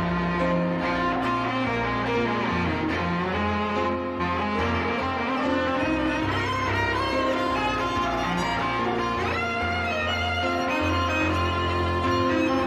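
Live chamber arrangement of a rock ballad: violin and cello playing sustained melodic lines over piano, with a wavering high line rising about 9 seconds in.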